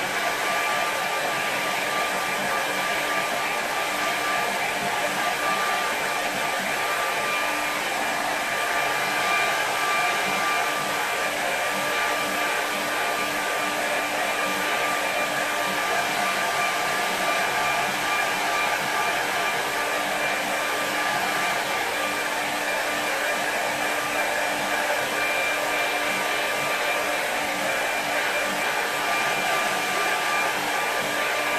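Handheld hair dryer blowing steadily, a constant rush of air with a steady whine in it.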